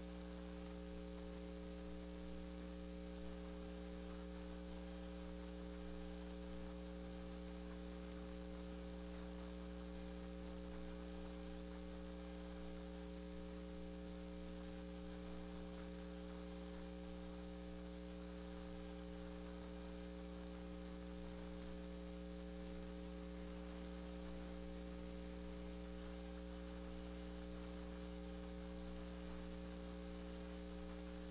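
Steady electrical mains hum with a faint hiss on an idle audio feed. It is a low, unchanging buzz made of several steady tones, with nothing else heard.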